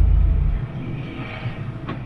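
Low rumble inside a moving vehicle's cab, which drops away sharply about half a second in, leaving a fainter steady hiss of road and cabin noise.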